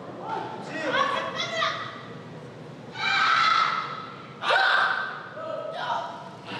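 Voices shouting encouragement: a few short calls in the first two seconds, then two long, loud held shouts about three and four and a half seconds in.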